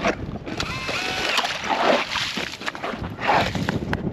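DeWalt cordless drill driving an ice auger, boring a hole through thick lake ice. The motor runs steadily under load with the grinding of the blade cutting the ice, easing off briefly about three seconds in.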